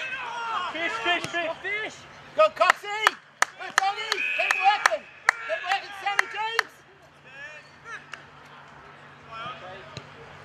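Shouting voices with a run of about a dozen sharp hand claps, roughly three a second, from about two and a half seconds in to six and a half seconds in. After that only faint calls remain.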